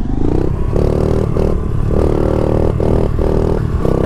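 Honda CRF70 pit bike's small four-stroke single engine running at high revs while being ridden, the throttle cut and reopened several times so the steady engine note breaks off briefly again and again.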